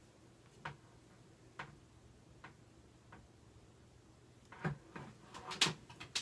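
Faint, irregular clicks about once a second, then a denser run of louder clicks and rustles near the end: hands handling hair and a curling wand.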